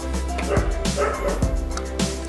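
A dog yipping a few times in short calls over a steady low hum.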